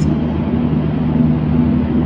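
Steady low mechanical hum and rumble, unchanging throughout.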